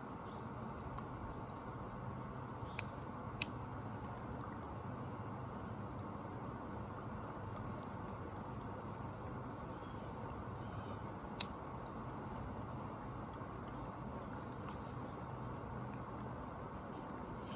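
Steady low background hum with no distinct event. A few faint sharp clicks stand out, the loudest about eleven seconds in.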